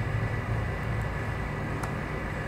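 Steady low background hum with a few faint clicks in the second half.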